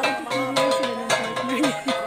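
Several gangsa, flat bronze gongs, beaten with sticks in an interlocking rhythm, each stroke ringing on.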